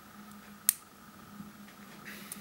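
A single sharp click about two-thirds of a second in, as a part is pressed and snaps into place in a PGA ZIF socket. Faint handling noise around it.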